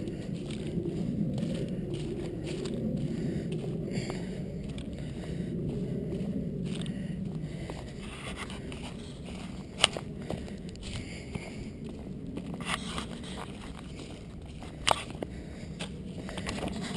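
Footsteps on a dry-leaf and gravel path, a steady walking rustle, with two sharp clicks about ten and fifteen seconds in.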